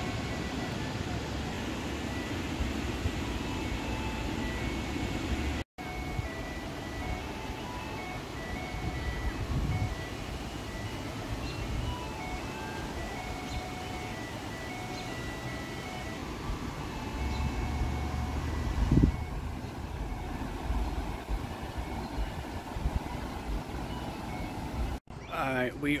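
An ice cream truck's electronic chime plays a simple tune of short, high notes over a steady rush of creek water and wind. The tune grows fainter about two-thirds of the way through. The sound cuts out for a moment about six seconds in.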